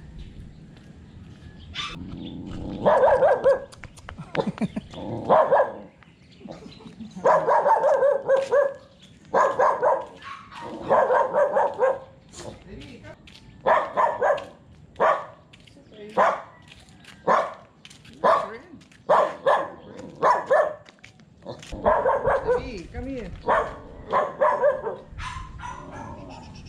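A dog barking over and over, about one bark a second, starting a couple of seconds in.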